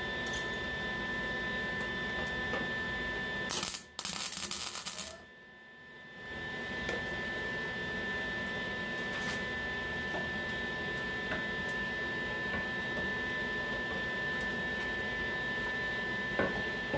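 A single burst of MIG welding arc, about a second and a half long, some four seconds in: a tack weld on thin sheet-metal body panel, with the Lincoln 180 welder set to a low heat setting. A steady electrical hum underlies the rest, dropping away briefly right after the weld.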